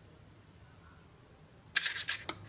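Faint room tone, then near the end a quick burst of sharp clicks and scrapes: a metal spoon and a metal muffin tin knocking together while batter is spooned into paper liners.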